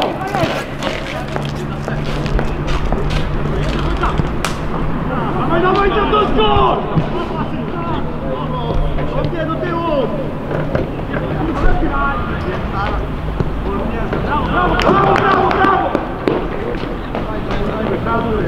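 Players and onlookers shouting indistinctly across an outdoor football pitch, loudest about six seconds in and again near fifteen seconds, with scattered sharp knocks over a steady low hum.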